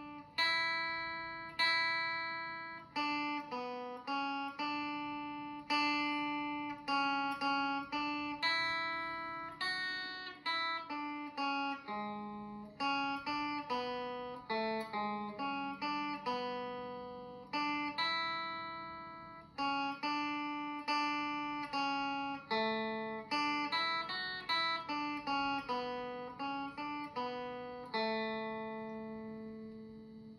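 Solid-body electric guitar played solo with a clean tone: a slow melody of single plucked notes, each ringing and fading, with occasional bass notes underneath. The last note is left to ring out near the end.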